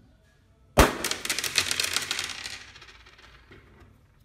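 A latex balloon popped with a needle: one sharp bang about a second in, followed by a two-second shower of small hard pieces spilling out and clattering onto the table, dying away.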